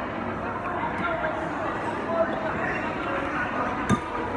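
Background chatter of many people talking in a busy indoor public dining area, with no single clear voice, and a brief sharp click near the end.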